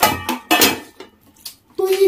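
Close-up eating noises at a meal: a quick run of sharp clicks and clatter of food, hands and plates in the first second, then a voice starts up near the end.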